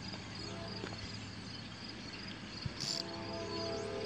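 Quiet outdoor background: a faint, high, pulsing trill with a low steady hum under it, and a short hiss just before the three-second mark.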